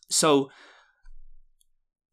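A man says "so" and then lets out a soft sigh, a short audible out-breath. A second faint breath or mouth sound comes about a second in.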